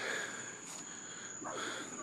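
Night insects trilling in one steady high-pitched tone, with faint background hiss.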